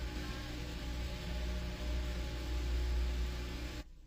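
Steady low hum and hiss of an old video transfer as the ballad's music dies away, cutting off sharply near the end.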